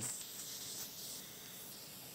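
A soft hiss, louder for about the first second and then steady and fainter.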